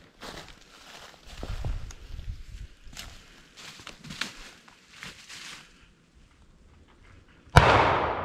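A single shotgun shot about seven and a half seconds in, sudden and loud with a long decaying echo, fired some way off at a running buck. Before it, only faint rustling.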